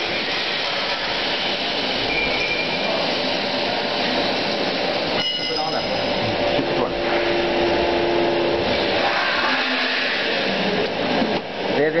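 LPG-fired flour-coating peanut roaster running with its rows of gas burners lit: a steady rushing noise of the flames and machinery, with a short sharp knock about five seconds in.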